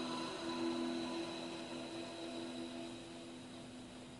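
Soft ambient meditation music: two low held tones that pulse gently, with fainter high tones and a soft hiss, slowly fading away.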